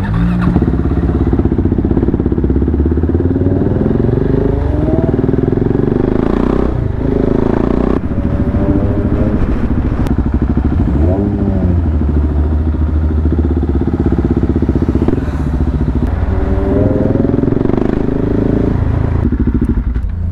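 KTM 690 Duke's single-cylinder engine running through an Akrapovič exhaust while riding in town traffic, its revs rising and falling several times.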